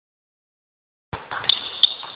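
Silence, then about a second in, the echoing, hissy sound of a large indoor basketball court comes in abruptly, with two short sharp knocks about a third of a second apart.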